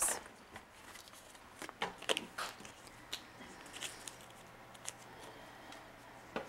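A scatter of faint clicks and short rustles from supplies being handled at a counter, with metal needle-pickup tongs among them.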